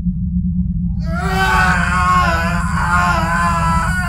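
A steady deep rumbling drone effect, joined about a second in by a long, wavering scream of pain held over it, from a bully clutching his head under a psychic attack.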